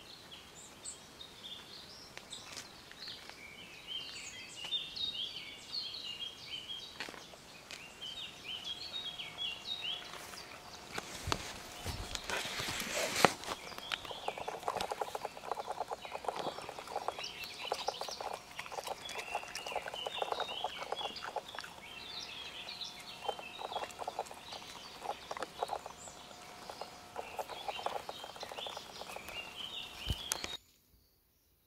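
Small birds chirping and singing throughout. From about halfway, after a loud brush of noise, a dog noses in the grass close by, with quick sniffing and rustling.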